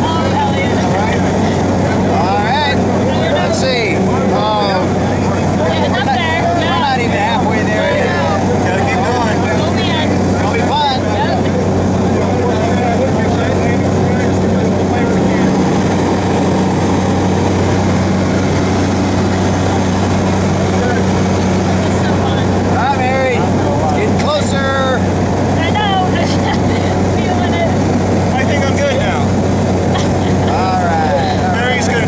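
Steady drone of a small jump plane's engine and propeller in flight, heard from inside the cabin, with people's voices talking indistinctly over it.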